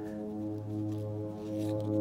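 A steady low drone holding one unchanging pitch with a row of even overtones, from a propeller airplane overhead.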